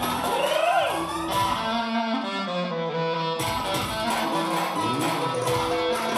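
Live dance music led by a clarinet, its melody sliding and bending between notes, over a band accompaniment with plucked-string sound. About a second and a half in, the melody runs into a quick stepped passage before the slides return.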